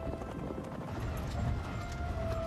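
Several horses galloping on grassy ground: a rapid, irregular patter of hoofbeats.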